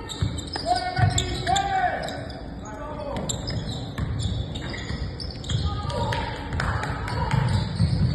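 A basketball bouncing on a hardwood gym floor as a player dribbles, with indistinct voices of players and onlookers calling out.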